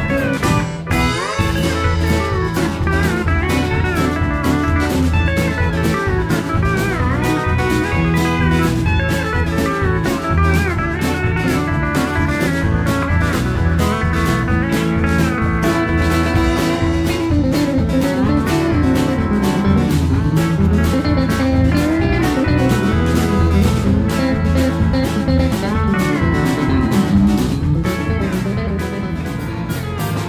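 Country band playing live without vocals: a steel guitar plays sliding lead lines over a steady drum beat, bass and strummed guitars.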